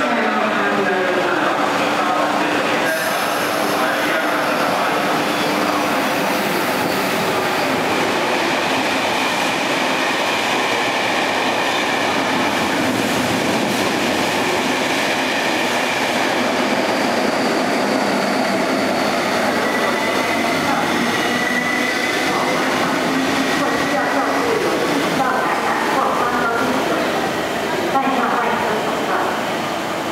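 A KTT double-deck through train running through a station platform at speed without stopping: a loud, steady rumble and rush of wheels on rails. A thin high squeal rises above it partway through, and the noise drops near the end as the last coaches pass.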